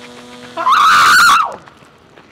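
A person screaming: one loud, high shriek lasting just under a second, starting about half a second in and falling in pitch as it breaks off.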